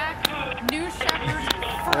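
Voices talking over the touchdown, crossed by several sharp, short clicks at irregular spacing, with a faint steady tone starting about a second in.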